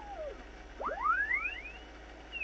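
Heterodyne whistle from a Yaesu FT-101 receiver in sideband mode as its VFO is tuned across a signal generator's carrier. The whistle, with a few fainter parallel tones beside it, falls in pitch to zero beat about half a second in. After a brief gap it rises again on the other side.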